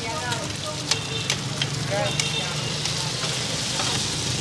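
Cubes of taro rice-flour cake sizzling in hot oil in a cast-iron pan. Two metal spatulas click and scrape against the pan now and then as they stir.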